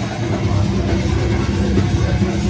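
Live heavy metal band playing loud: distorted electric guitar and bass over drums in a dense, steady wall of sound.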